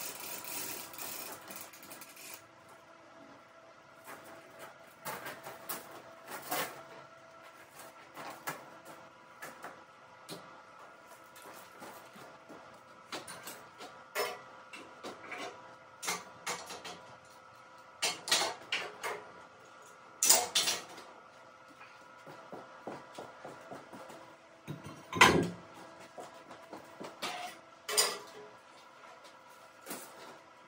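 Scattered metal clanks and chain rattles as a heavy steel plate is rigged with lifting chains under a jib crane hoist, over a faint steady hum. The loudest is a single heavy knock a few seconds before the end.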